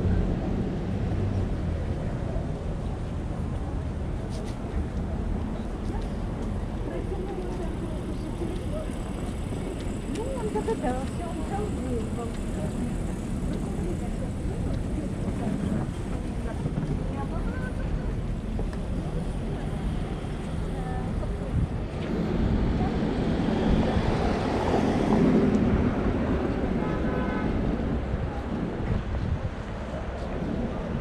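City street ambience: a steady rumble of road traffic with passers-by talking now and then. The traffic swells louder for a few seconds near the end.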